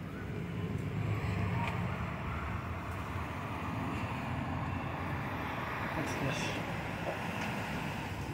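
Street ambience: a steady low rumble of cars driving along the road, with faint voices of people further along the sidewalk.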